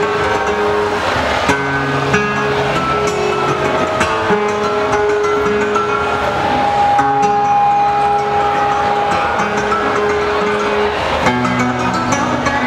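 Live flamenco: a male singer holding long drawn-out notes over a flamenco guitar accompaniment.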